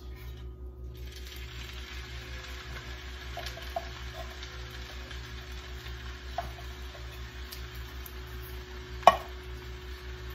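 Tomato sauce poured from a can into a hot cast iron skillet of browned ground meat, with a faint steady sizzle that starts about a second in. A few light clicks and one sharp tap near the end, likely the can or spatula against the pan, over a steady low hum.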